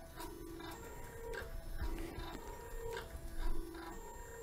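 Grundfos Smart Digital DDA dosing pump's stepper motor running just after start-up. It is a faint pitched whir that comes in short tones repeating every half second or so.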